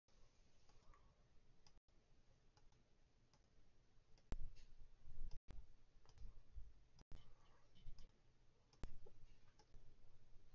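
Faint, scattered clicks and light knocks on a desk where metal fidget spinners are being spun, heard mostly in the second half over quiet room tone.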